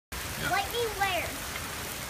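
Heavy rain falling steadily on pavement and grass. A short high-pitched voice sounds twice, about half a second and a second in.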